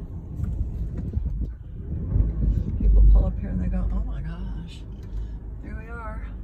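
Low rumble of a car rolling slowly over uneven ground, heard from inside the cabin, with a louder low bump about three seconds in.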